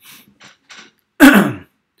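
A person clearing their throat once, loudly and briefly, a little over a second in.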